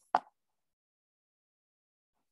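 A single short pop just after the start, then dead silence.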